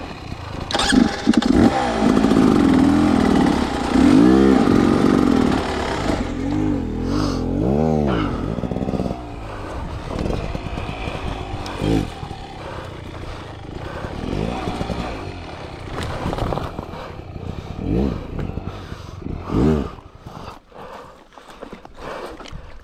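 Beta enduro motorcycle engine revving hard in repeated rising and falling surges while climbing a steep rock slab, loudest for the first several seconds. Shorter single throttle blips follow later, as the engine is worked on and off.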